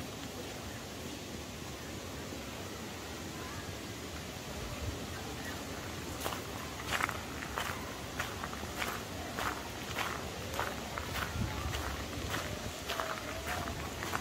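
Footsteps of the walker filming, on a sandy gravel path, at about one and a half steps a second. The steps become distinct from about six seconds in, over a steady outdoor background.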